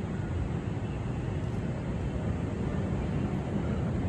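Steady low rumble of city background noise, traffic and wind, unbroken by any distinct event.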